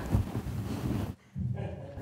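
Laughter, with a brief break a little over a second in.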